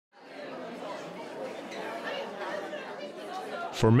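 Indistinct chatter of a crowd of people talking in a large indoor hall, a steady background murmur of many voices. Near the end, one man's voice starts speaking clearly over it.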